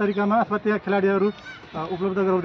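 A man's voice speaking in short runs of syllables with brief breaks.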